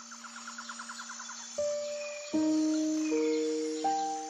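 Soft background music made of long held notes that enter one after another, opening with a brief rapid ticking trill of about ten pulses a second.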